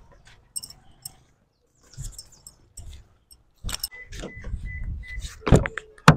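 Light metallic jingling and scattered clicks, with a louder knock near the end.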